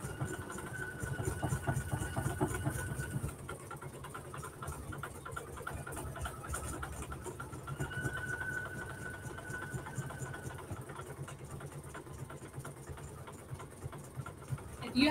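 PFAFF computerized embroidery machine stitching out a design: a fast, even needle rattle, with a steady high whine that comes in twice for about three seconds each time.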